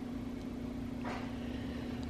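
A steady low hum with faint background hiss, the hiss swelling slightly about a second in.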